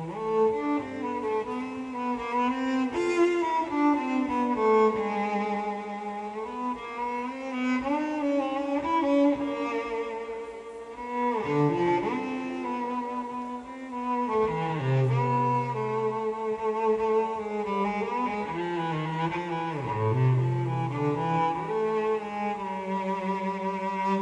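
A cello bowed live, playing slow sustained notes: a melody over low held notes, with a few notes sliding in pitch.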